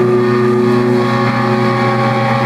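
Live rock band playing a sustained drone, electric guitars and keyboard holding steady, overlapping notes.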